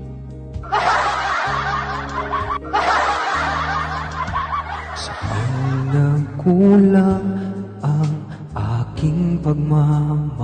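A man singing into a handheld microphone over a karaoke-style backing track of sustained chords. Over the first few seconds a dense, chattering, laughter-like noise lies on top of the music; the voice comes through more clearly in the second half.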